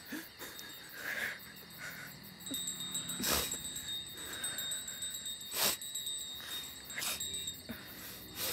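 A few bright chime strikes, the clearest about three and a half and five and a half seconds in, over a steady high chirring like night insects.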